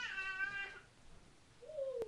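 A cat meowing: one long meow that falls in pitch and then holds during the first second, then a lower, shorter falling call near the end.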